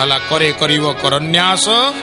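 A man's voice singing a devotional chant in long, wavering phrases with sliding pitch, over harmonium accompaniment holding steady notes underneath.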